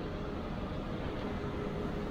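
Steady background noise of a pub bar room, with a faint steady hum running under it.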